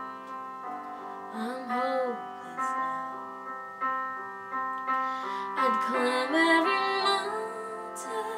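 Slow ballad piano accompaniment, sustained chords struck about once a second. A woman's voice sings short wordless sliding notes twice, near the start and again about three-quarters of the way through.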